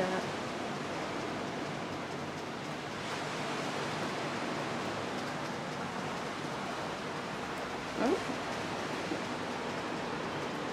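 Steady outdoor ambience: an even, rushing wash of noise with no distinct events, and a brief spoken "oh" about eight seconds in.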